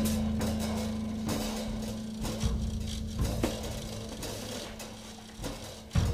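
Free-jazz band music, sparse: a held low note slowly dies away under scattered, irregular drum and percussion hits.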